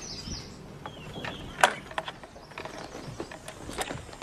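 A few scattered sharp clicks and knocks, the loudest about one and a half seconds in.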